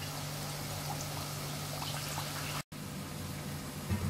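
Medu vada batter frying in a pan of hot oil: a steady sizzle, broken off for a moment about two-thirds of the way through.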